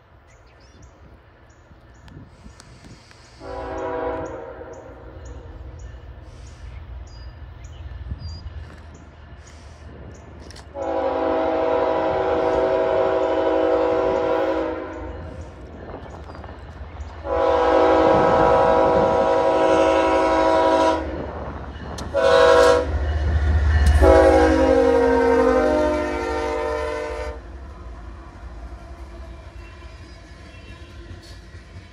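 Horn of the lead BNSF diesel locomotive on a loaded crude oil train: a brief first blast, then the grade-crossing signal of two long blasts, one short and one long. Under it runs a low diesel rumble that swells as the locomotives draw close and pass.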